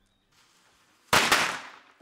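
Small firecrackers going off: a rapid cluster of sharp bangs about a second in, fading out within half a second.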